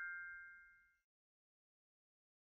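The ringing tail of a bell-like chime from the logo sound effect: a few high, steady tones dying away within the first second.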